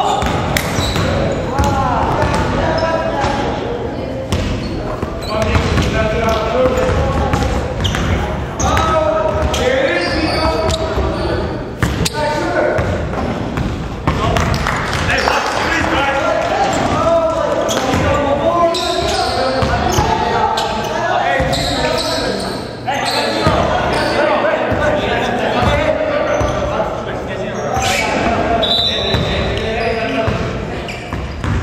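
Basketball players' voices, untranscribed, carrying through an echoing gymnasium, with a basketball bouncing on the hardwood floor and a few sharp thuds and sneaker noises in between.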